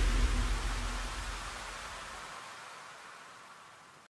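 The closing tail of an electronic dance track: a hiss-like noise wash over a fading low bass, dying away steadily to almost nothing as the song ends.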